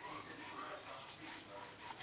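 Hands rubbing aftershave into freshly shaved cheeks: faint, soft swishes of palms and fingers over skin.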